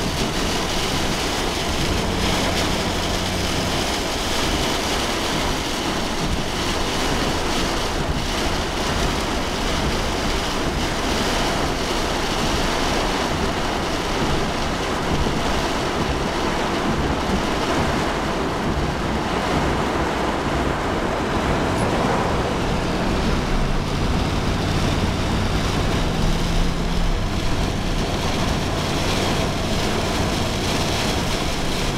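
Steady rush of heavy storm rain and wind on a moving car, heard from inside, with the car's low engine and road hum underneath.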